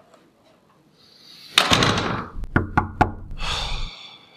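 Knuckles knocking on a wooden door: a quick run of raps about a second and a half in, then four separate knocks.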